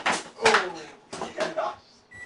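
A sharp smack of a twisted towel, a 'rat tail', cracking at the start, followed by a shouted 'oh' and a few lighter knocks and scuffles.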